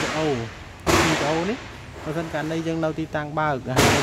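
Kubota M7040 tractor's gear-shift levers moved by hand through their gates, two sharp clacks: one about a second in and one near the end.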